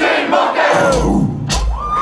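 A concert crowd shouting and cheering. Under it the hip-hop backing track's bass drops out for about a second, then comes back in short stretches.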